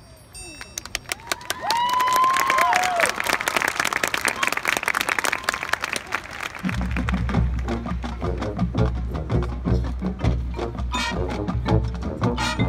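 Marching band playing: rapid percussion hits with a few whooping shouts over them, then about seven seconds in the full band comes in with low brass and a steady beat.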